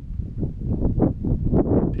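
Wind buffeting the microphone: an uneven low rumble that surges and falls irregularly.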